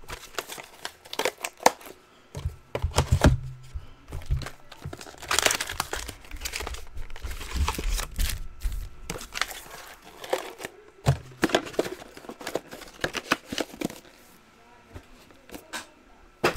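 Foil trading-card packs crinkling and rustling as they are handled and shuffled into stacks, with irregular crackles and occasional taps throughout.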